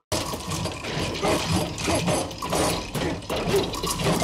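A kitchen sink being worked on by hand: a busy run of metallic clanks, rattles and ratchet-like clicks.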